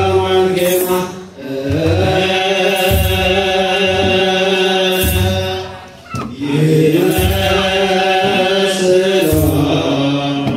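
Ethiopian Orthodox liturgical chant sung by a group of clergy and deacons through microphones, carried over a deep kebero drum struck about every two seconds. The chant breaks off briefly twice, about a second in and again around six seconds in.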